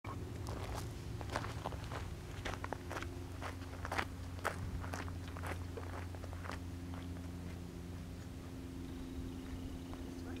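Footsteps crunching on gravel, an uneven series of crisp steps that thins out after about six and a half seconds, over a steady low hum.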